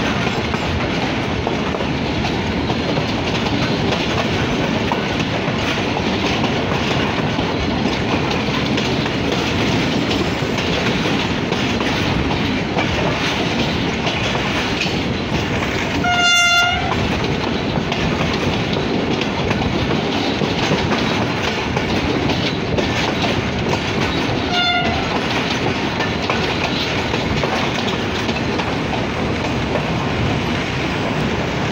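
HGMU-30 diesel-electric locomotive running at speed, heard from its side: a steady rumble of engine and wheels on rail. About halfway through, its horn sounds one short blast, the loudest moment, and near the end a shorter, fainter toot follows.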